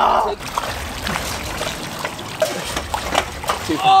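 Swimming-pool water splashing and sloshing as people wade and push a trampoline through it, with a burst of splashing at the start. A shout near the end.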